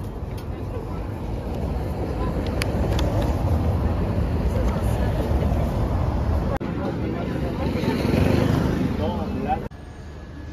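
Street traffic with a low rumble that builds and holds, under background chatter of voices; cut off abruptly just before the end.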